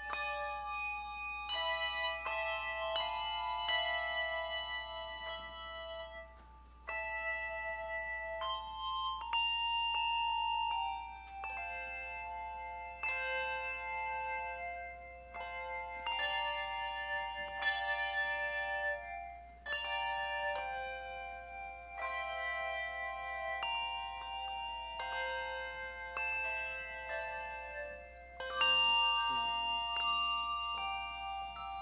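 A handbell choir playing a hymn-like piece: chords and melody notes of ringing bells struck together, each tone sustaining and overlapping the next before it fades.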